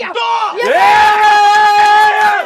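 Men shouting in celebration of a goal: a short rising yell, then from about half a second in one loud, long held cheer at a steady pitch.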